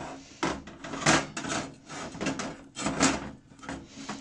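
Metal gas-hob burner cap and ring being turned and pushed onto the burner base, scraping and clunking in a series of irregular knocks and rubs as the unseated parts are worked back into place.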